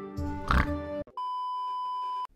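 Background music trails off, with a short pig oink sound effect about half a second in. About a second in it cuts to a steady, unwavering test-tone beep of the kind played with TV colour bars, held without change.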